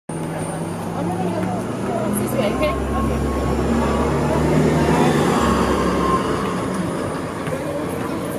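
City bus driving past close by, its low engine hum swelling to its loudest about halfway through and then fading.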